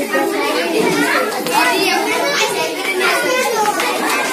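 Many children's voices chattering and calling out over one another, a dense babble of young voices.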